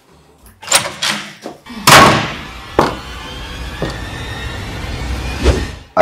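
A door slams shut about two seconds in, ringing briefly, followed by a steady background hum with a few faint knocks.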